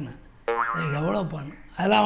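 A man's voice that slides sharply up in pitch about half a second in, after a short click, then talks on, with a brief pause before more speech near the end.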